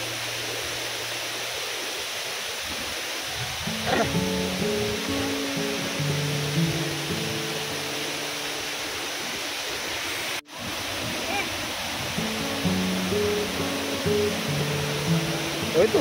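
Steady rush of a jungle waterfall, with background music of held, stepping notes coming in about four seconds in. The sound cuts out for a moment just after ten seconds.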